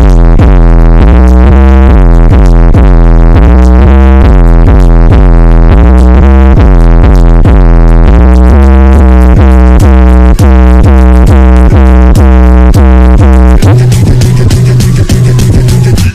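Loud, distorted bass-boosted electronic music, a heavy bass line pulsing in a quick repeating rhythm. It thins out near the end.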